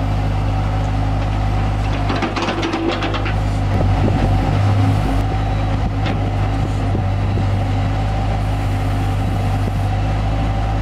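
Bobcat S185 skid-steer's diesel engine running steadily while its backhoe bucket digs, with a burst of scraping and clattering from dirt and stones about two to three seconds in. The engine works a little harder about four to five seconds in as the bucket curls in its load and lifts.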